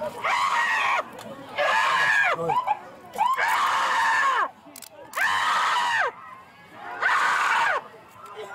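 A person screaming over and over: five loud cries, each about a second long, rising and then falling in pitch, with short pauses between them.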